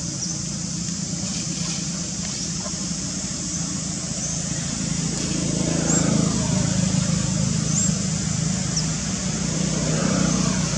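A motor vehicle engine running as a steady low drone, growing louder about five seconds in, with short high chirps scattered throughout.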